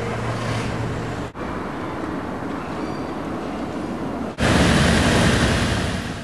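Steady outdoor hiss of distant road traffic and wind. About four and a half seconds in it cuts abruptly to louder city street traffic, with queued cars and vans running.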